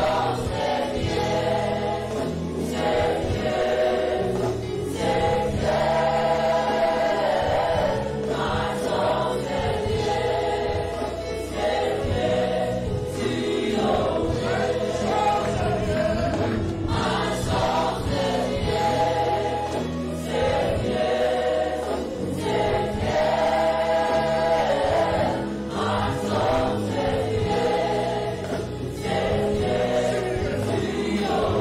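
Live gospel worship music: a group of singers and the congregation singing together over a band with electric guitar and bass guitar, continuous and steady throughout.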